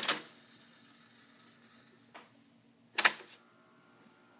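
Mechanical clicks from the joystick transport lever of a Tandberg 3000X reel-to-reel tape deck as playback is stopped and the transport is switched toward rewind. There is a sharp click at the start, a faint click about two seconds in, and a louder double click about a second later, over a faint steady hum from the machine.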